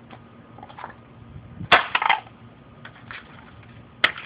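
A single sharp crack of laptop plastic being smashed on concrete a little under two seconds in, with a short crackle after it. A few faint knocks of loose parts come before and after it.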